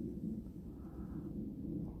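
Faint low background noise with no distinct event: room tone in a short gap between spoken phrases.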